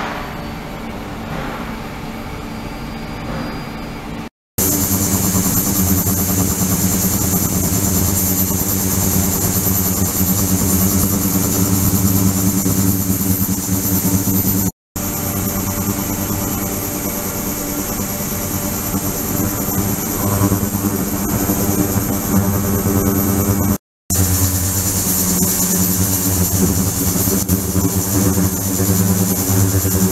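Ultrasonic cleaning tank running with its liquid circulation going: a steady mechanical hum with many even overtones and a high hiss above it. It is quieter for about the first four seconds, then louder, and it cuts out briefly three times.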